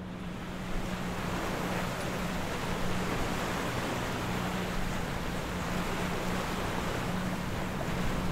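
Steady rush of sea water and wind as a boat moves through the sea, with a steady low engine hum beneath it.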